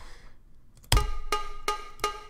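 Electronic track playing back: a short, cowbell-like percussion sample layered on a synth line, giving its attacks more snap. After about a second of near quiet, pitched hits come about three a second, the first with a deep thump.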